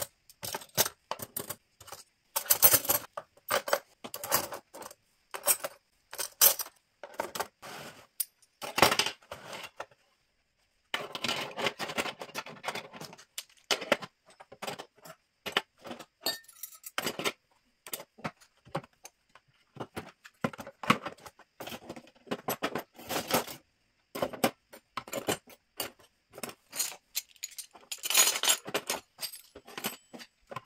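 Metal cutlery and kitchen utensils clinking and rattling as they are set one after another into a plastic cutlery tray in a kitchen drawer, with a short pause about a third of the way through.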